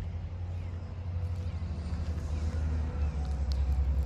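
Steady low outdoor rumble with a faint hum above it.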